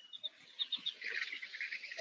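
Birds chirping faintly: a few short high chirps in the first second, then softer twittering.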